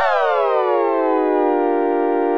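A chord played on a Native Instruments Maschine Sampler patch, its pitch driven by a modulation envelope. The notes jump up at the attack, glide down over about a second and a half to the sustain level, then hold steady.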